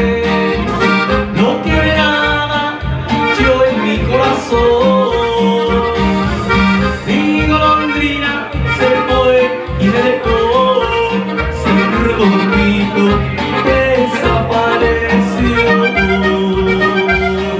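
Button accordion playing a melody over electronic keyboard accompaniment, with a steady bass beat.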